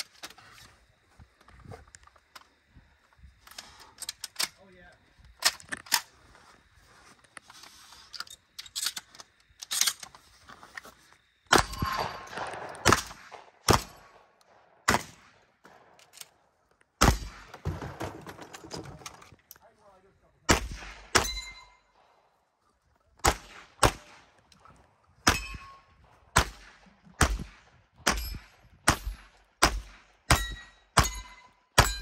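Gunshots in a 3-gun course of fire: irregular shots in the first half, then a steady string of single shots about a second apart. Many shots are followed by a short metallic ding as steel targets ring when hit.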